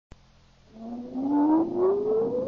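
Electronic sound effect: a single whining tone that starts under a second in and rises slowly and steadily in pitch, with an echoing haze beneath it, winding up toward a rocket launch.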